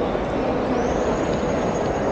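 Steady hubbub of a large indoor shopping-mall atrium: a dense, even wash of distant voices, footsteps and building noise in a reverberant hall, with no single sound standing out.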